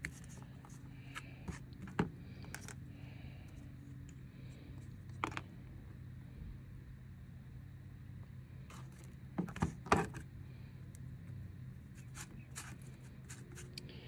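Scattered light clicks and scrapes from a flexible putty knife and small tubes as polyester stone resin for patching marble is scooped onto cardboard and tinted gray. The loudest is a pair of sharp clicks about ten seconds in. Underneath runs a steady low hum.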